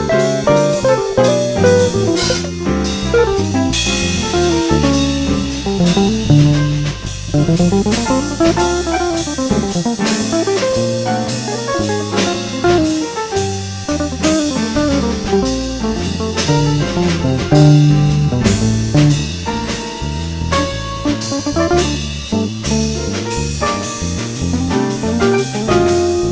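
Instrumental jazz played in two: a guitar carries the melody over drum kit and bass. About eight seconds in, the melody slides up and back down.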